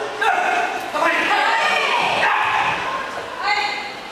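Several people's voices overlapping: indistinct chatter and short raised calls, none of it clear speech.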